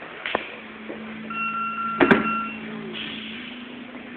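Grapplers' bodies going down onto a padded mat in a takedown: a sharp thump about a third of a second in and a louder cluster of knocks about two seconds in, with a steady high tone sounding for about a second around the second knock.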